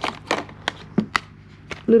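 Hands handling a cardboard phone box and its packaging: a quick run of light, irregular clicks and taps, about a dozen in two seconds.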